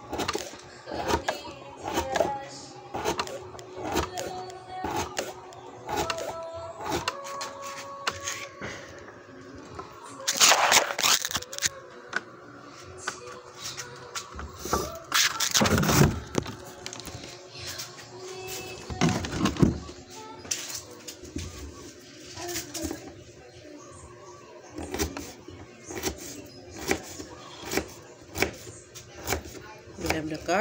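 Kitchen knife chopping carrots on a wooden cutting board: a run of short, irregular taps, with music playing underneath. A few louder noisy bursts come about ten, fifteen and nineteen seconds in.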